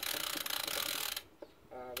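Bicycle drivetrain turned by hand: a Molten Speedwax-treated YBN chain running through the rear derailleur's narrow-wide pulley wheels with rapid ticking, which stops suddenly about a second in. The chain is slightly too narrow for the pulley teeth, so it sits really snug and has a hard time going around.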